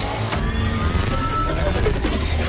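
Sci-fi film trailer sound design: a heavy, steady machine-like rumble with faint clicks and a thin rising tone, mixed with music.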